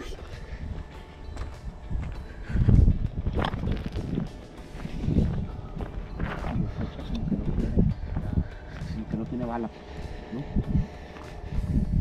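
Irregular low rumble and soft knocks of the camera being carried on foot over desert ground, with faint background music under it; no gunshot.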